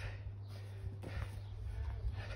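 A person's feet landing a broad jump on grass, a soft dull thud about a second in, over a steady low hum.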